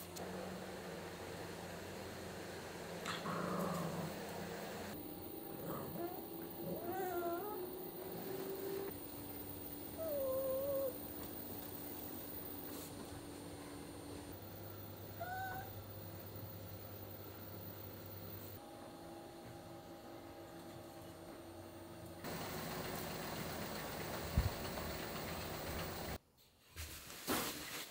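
Small dog whining: several short, wavering high-pitched whines a few seconds apart.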